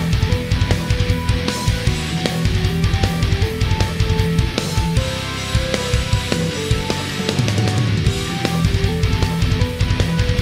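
Heavy metal song playing back in full: guitars, bass and keys over a mixed multitracked drum kit (kick, snare, toms, overheads and room mics). The drums are natural recorded tracks with no drum samples.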